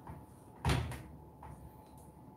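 A single loud, dull knock about two-thirds of a second in, over faint sounds of thick, sticky brownie batter being stirred by hand in a glass bowl.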